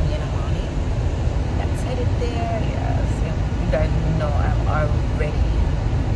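Steady low road and engine rumble inside a moving car's cabin, with a woman's voice talking over it.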